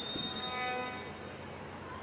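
A single held horn-like note with a bright, many-toned sound, starting suddenly and fading away over about a second and a half, over a steady background haze.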